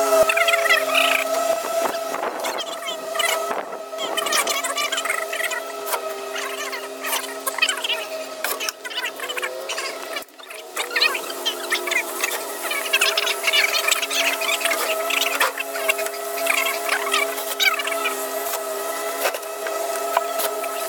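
Fast-forwarded sound of the top cover being set back onto a packaged AC unit: squeaky, chattering scrapes and clatter of the metal panel being handled, over a steady hum.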